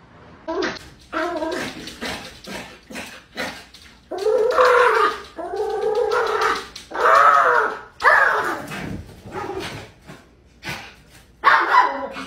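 A small dog crying out: short yips at first, then a run of four louder drawn-out cries that rise and fall in pitch, each about a second long, and one more short cry near the end.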